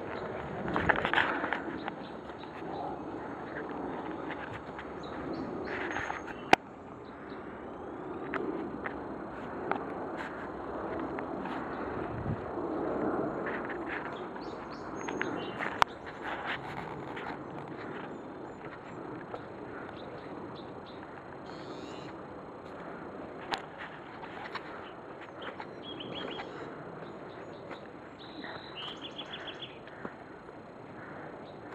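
Rustling and footsteps of a person moving through undergrowth and leaf litter, with a few sharp clicks and knocks along the way. Birds chirp now and then, with a quick run of chirps near the end.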